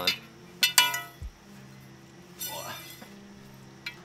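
Paramotor hoop tubing clinking as the sections are handled. There is a sharp ringing clink just under a second in and a fainter one about two and a half seconds in.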